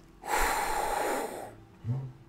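A man's sharp, noisy breath through the mouth, a wincing hiss lasting just over a second, in sympathy with pain. A short low grunt follows near the end.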